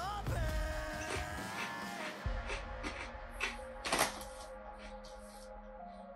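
Crunching of a kettle-cooked potato chip being bitten and chewed: a few irregular crisp crackles, the loudest about four seconds in. Background music with held notes plays throughout.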